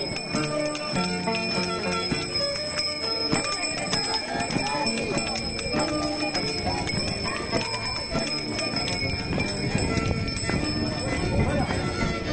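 Live chimaycha music for a dancing crowd: held notes of the band, bright jingling and clicking, and the crowd's voices, which sing, shout and talk.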